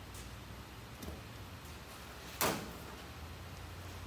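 A single short, sharp knock or clank about two and a half seconds in, over a steady low hum, with a faint click about a second in.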